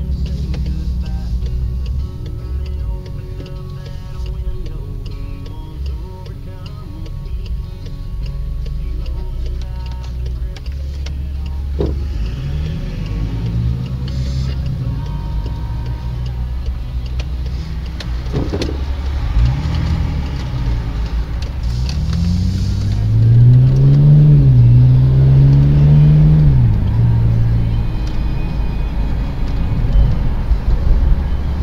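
Car engine and road noise heard from inside the cabin, the engine note rising and falling several times through the second half as the car accelerates through its gears, loudest shortly before a sharp drop in pitch near the end.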